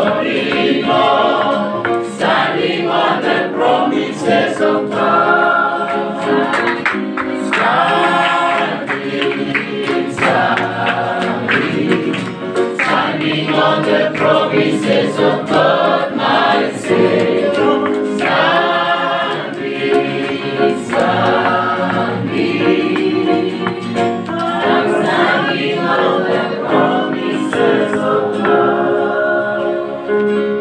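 Choir singing a gospel hymn together in harmony.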